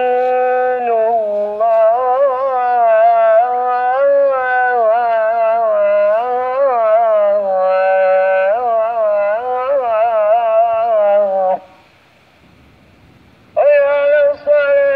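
A male muezzin chants the ezan, the Islamic call to prayer, in long held, ornamented phrases. The voice stops about twelve seconds in, and after a pause of about two seconds the next phrase begins.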